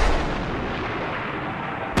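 A deep boom whose rumbling tail dies away slowly, then a second sharp boom at the very end.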